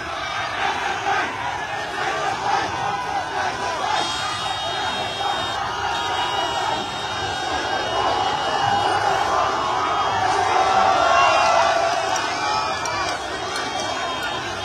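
Large crowd shouting and cheering, many voices at once, swelling louder about ten to twelve seconds in.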